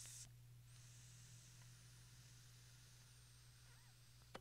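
Very faint drag on a Joyetech eCab pen-style e-cigarette: a soft hiss of air pulled through its very stiff airflow with a thin high whistle, lasting about three seconds. The drag draws only air.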